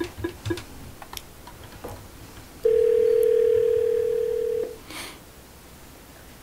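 Telephone ringback tone: a few faint clicks, then one steady two-second ring tone from about two and a half seconds in, the sign of an outgoing call ringing at the other end.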